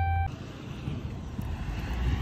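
A steady electronic chime tone inside a pickup cab cuts off abruptly just after the start. After it, a steady low rumble and hiss of outdoor vehicle and background noise carries on.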